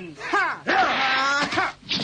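A cartoon character's fighting yell: a short cry, then one long held shout lasting about a second.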